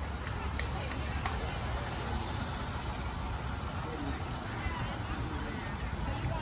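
Steady outdoor ballfield background noise with a low rumble and faint, distant voices of players and spectators. A few faint clicks come in the first second and a half.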